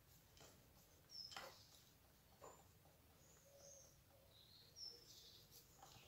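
Near silence while paint is stirred with a stick in a plastic cup: a few faint knocks of the stick against the cup, and a few faint high chirps in the background.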